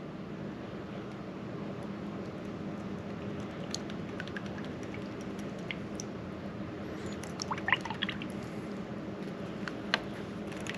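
Faint drips and small splashes of coffee as a damascus knife blade is lifted out of a coffee bath, most of them about three quarters of the way in, over a steady low hum.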